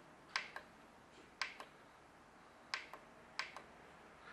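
Push buttons on a 5900-BT control valve head being pressed, giving sharp plastic clicks in close pairs, about four times.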